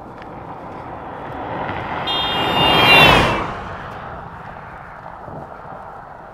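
A motor vehicle passing on the road: its tyre and engine noise swells to a peak about three seconds in and then fades away, with a high whine that drops slightly in pitch as it goes by.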